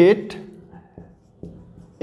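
Marker pen writing on a whiteboard in a few short, faint strokes.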